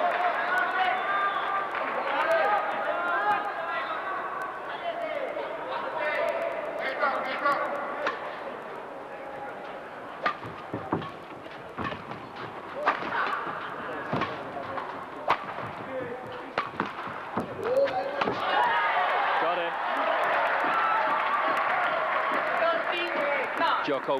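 A badminton rally: sharp racket strikes on the shuttlecock, one every second or so through the middle of the stretch, set between arena crowd chatter at the start and a swell of crowd noise near the end as the point ends.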